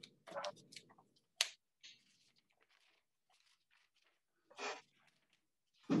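A quiet room heard over a video-call link, with a few faint clicks and soft rustles, one sharper click about a second and a half in. A man's voice begins right at the end.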